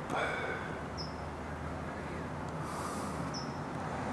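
Steady outdoor background noise with two short high chirps, one about a second in and one just past three seconds, and a brief soft hiss just before the second chirp.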